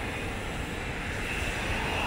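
Steady low outdoor rumble, with a faint high whine joining about halfway through.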